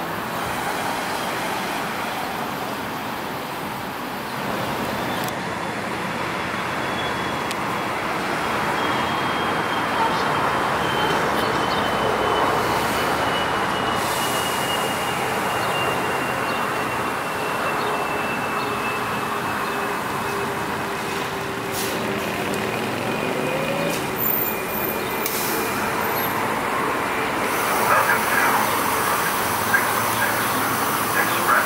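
New Flyer E40LFR electric trolleybus driving on overhead-wire power over steady road noise, its traction motor whine slowly falling in pitch as it slows into the stop. A few short knocks near the end.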